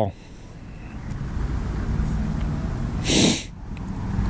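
Steady low outdoor rumble that swells over the first two seconds, with a short breathy rush of noise about three seconds in.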